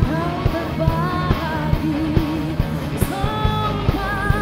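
Live pop-rock band performance: a singer holds and slides between sung notes with vibrato over a steady drum beat, bass and keyboard.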